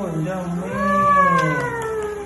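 A person's voice drawn out in one long note, rising briefly near the start and then slowly falling in pitch.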